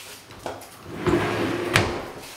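A built-in wooden cupboard door being opened: a small click, then a brief rubbing creak, and a sharp click near the end.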